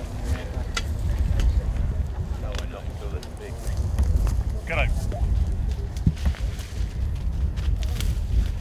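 Low wind rumble on the microphone, with scattered rustles and clicks and the faint, indistinct voices of people talking at a distance.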